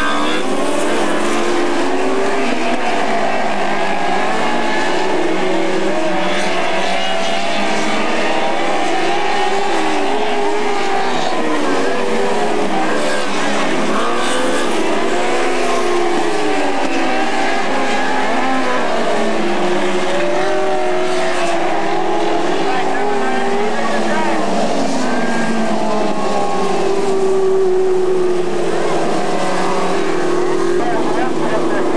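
Engines of several midget race cars racing together on a dirt oval. The engine notes keep rising and falling as the cars pass through the turns and accelerate down the straights, many pitches overlapping.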